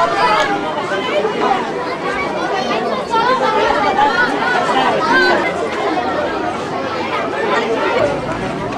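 Many voices talking at once: crowd chatter.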